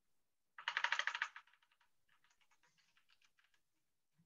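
Typing on a computer keyboard: a quick run of keystrokes from about half a second in, followed by scattered fainter key taps.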